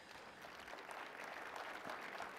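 Faint applause from an audience in a hall, a light patter of clapping that grows a little louder.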